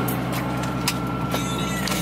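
Car engine idling with a steady low hum, with a few light plastic clicks as the centre console lid is opened.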